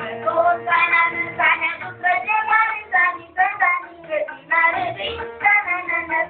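A child singing Indian classical (shastriya) vocal music in short melodic phrases separated by brief pauses.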